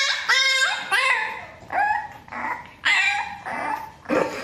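A puppy whining in four short, high-pitched cries, each bending in pitch, about a second apart.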